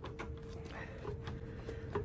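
Motorcycle battery being pushed and shifted down into its battery tray: faint, scattered light knocks and clicks of the plastic case against the tray and cables, with a slightly sharper knock at the end. A faint steady hum runs underneath.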